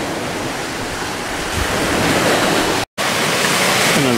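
Steady rushing of small waves on the shore, mixed with wind on the microphone. The sound cuts out for an instant about three seconds in.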